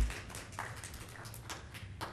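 A dull low thump at the start, then a few faint scattered taps and rustles.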